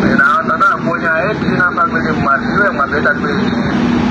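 A person talking fast and animatedly, with a steady low hum underneath.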